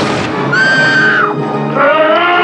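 Horror film soundtrack music with a high, held wailing cry from about half a second in that bends down and breaks off, and another cry rising near the end.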